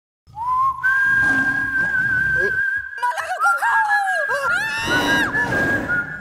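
Whistling: two long high notes held together, with a burst of quick sliding, swooping calls from about three seconds in. A low rumble runs underneath.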